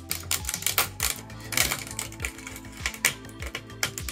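3D-printed plastic support structures snapping and crackling as they are torn off a printed head by hand: a rapid, irregular run of small clicks and cracks.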